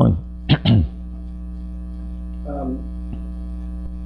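A man with a cold clearing his throat twice in the first second, over a steady electrical mains hum that carries on after it.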